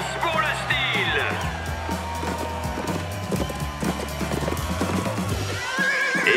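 Background music with a steady beat, with a cartoon horse's whinny falling in pitch about a second in, followed by hoofbeats as the horse gallops.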